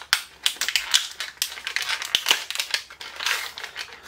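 Packaging crinkling and clicking as it is handled: a quick, irregular run of small crackles and ticks.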